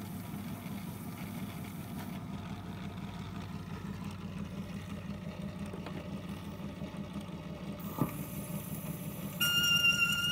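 RCA Victrola 55U radio-phonograph running with a 78 rpm record turning before the music begins: a steady low hum with faint surface hiss, and one sharp click about eight seconds in. The orchestra's first notes come in faintly near the end.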